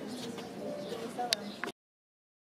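Outdoor terrace ambience of indistinct voices and bird calls, with a sharp click a little over a second in. The sound then cuts off abruptly to silence.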